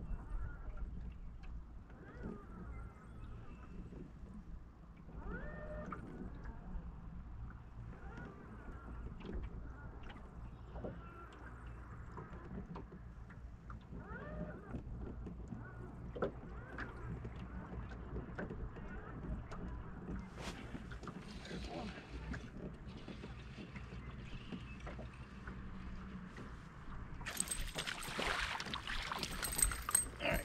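Wind buffeting the microphone and small waves lapping against an aluminium-and-fibreglass bass boat hull, steady throughout. Near the end a louder rushing splash comes as a hooked crappie is pulled up out of the water.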